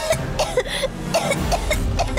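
A young girl coughing and choking in rapid, repeated short fits.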